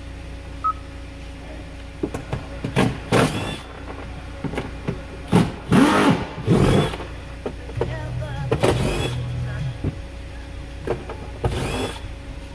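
Short bursts of audio from the car stereo's speakers, with speech-like fragments that start and stop as the radio head unit is switched between sources and stations, over a steady low hum.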